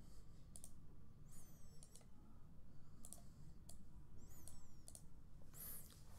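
Faint, irregularly spaced clicks of a computer mouse as pages and menus are clicked through. Two brief high chirps are also heard, about a second and a half in and again past four seconds.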